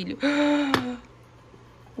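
A woman's drawn-out wordless exclamation, held on one pitch for under a second, with a short click near its end; then quiet room tone.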